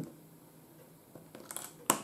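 Small plastic Lego pieces being pressed together by hand: a few faint clicks, then one sharp click near the end as a piece snaps onto the base.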